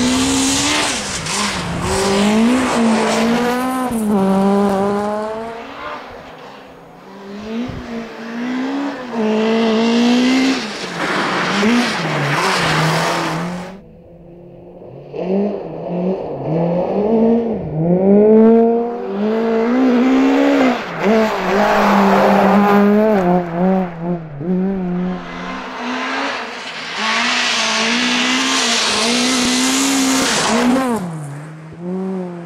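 A rally car's engine revving hard, its pitch climbing and dropping again and again as the driver shifts and lifts through the stage. The sound cuts off abruptly about halfway, then a quieter engine builds back up to full revs.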